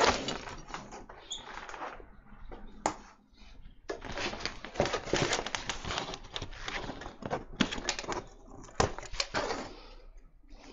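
Hands handling a bamboo hamper and its removable metal frame: irregular knocks, clicks and rustling scrapes, with a brief lull about three seconds in.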